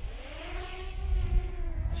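DJI Mini 2 quadcopter taking off: its four propeller motors spin up with a whine that rises in pitch over about the first second and then holds steady as it lifts into a hover. Wind rumbles on the microphone underneath.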